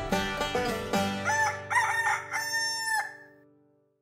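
Plucked-string outro music ends on a held chord, and a rooster crows once over it from about a second in; the chord then fades out to silence.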